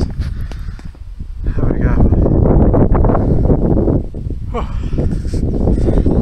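Wind buffeting a phone microphone high in an exposed treetop lookout: a loud, low, rough rumble that eases about a second in, then swells and stays strong, with brief voices partly buried under it.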